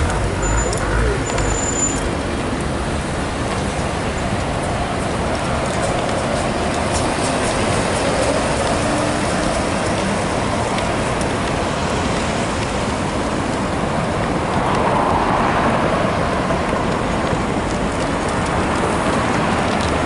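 Steady city traffic noise as a BYD battery-electric double-decker bus moves off among cars, with no engine note of its own standing out above the road noise.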